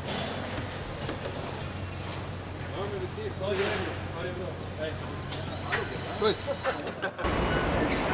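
Car-factory assembly-hall ambience: a steady machine hum under a bed of clanks and shop noise, with people talking and laughing in the background and a short high-pitched tone past the middle. Near the end the hum cuts off and a louder, rougher noise takes over.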